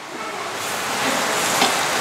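Hot oil sizzling in a pan of frying sliced onions, curry leaves and green chillies as red chilli masala paste is stirred in. The sizzle builds over the first second, then holds steady.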